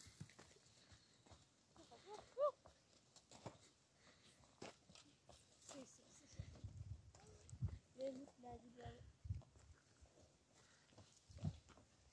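Near silence, with faint scattered clicks and knocks and a few brief faint voice-like calls, about two seconds in and again around eight seconds.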